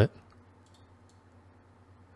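A few faint computer mouse clicks in the first second, against quiet room tone.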